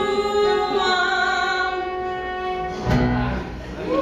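Female cast singing a musical-theatre number, holding long notes, with a low thump about three seconds in.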